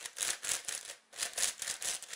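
Plastic layers of a YuXin HuangLong 10x10 speed cube being turned by hand: several quick clicking, rattling turns in a row.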